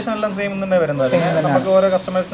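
Men talking, with a steady hiss joining about a second in.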